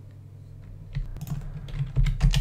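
Computer keyboard typing: a run of quick keystrokes starting about a second in, over a low steady hum.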